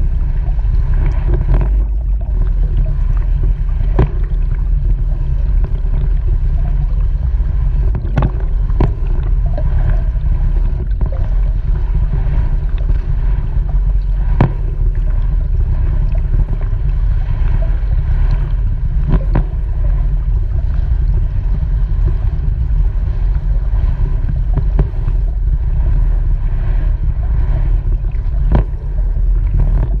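Underwater pool sound picked up by a submerged camera: a steady muffled rumble of churning water from a swimmer's freestyle strokes and kicks, with scattered sharp clicks.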